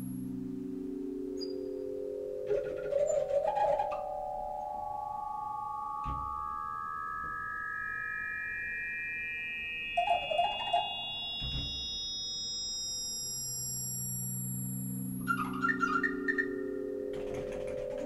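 Pure electronic tones, like those of a synthesizer, stepping upward in pitch one note after another, each note overlapping the next. They climb from low to very high over about fourteen seconds, and a second climb from the bottom begins near the end. Three short clusters of clicking, puffing noise from the pipe organ's valves and pipes break in, a few seconds in, around the middle and near the end.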